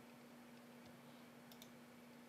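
Near silence with a faint steady hum, broken about one and a half seconds in by two faint computer mouse clicks a tenth of a second apart.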